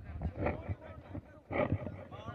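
Indistinct voices of people at a gathering, with two louder voice sounds, one about half a second in and one near the end.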